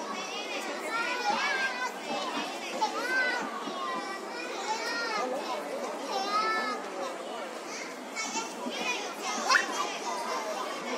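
Young children's high-pitched chatter and calls as they play, with a brief sharp rising squeal near the end.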